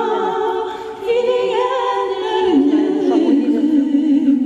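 Two women singing a duet, holding long sustained notes, with a short break about a second in.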